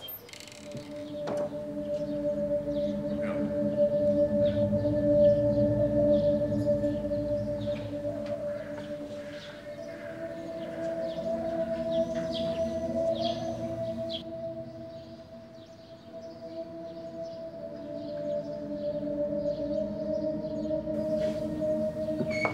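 Background music score of long held, sombre tones that swell and fade in loudness, with the main note stepping up in pitch about halfway through.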